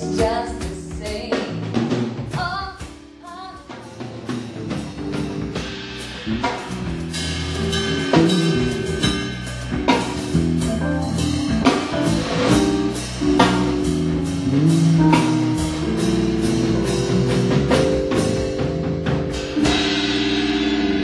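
Live band playing an instrumental passage: drum kit beating a steady rhythm under bass guitar and keyboard, with a few sung notes near the start. It drops back for a moment a few seconds in, then builds up again.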